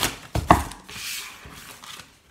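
A few sharp knocks of craft materials set down on a wooden tabletop, the loudest about half a second in, followed by a brief soft rustle of paper or packaging sliding.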